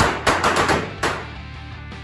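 A quick string of sharp bangs from confetti poppers going off, about half a dozen cracks within the first second, dying away after. Background music plays underneath.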